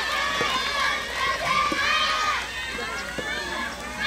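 Many voices calling and shouting at once from players and spectators across the soft tennis courts, with a few short soft knocks.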